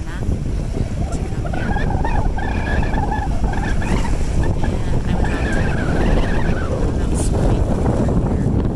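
Wind buffeting the microphone over small waves washing against a rocky shoreline, a steady rushing rumble. Through the middle a faint, wavering high-pitched call carries over it.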